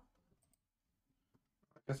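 A few faint, scattered clicks of a computer mouse and keyboard.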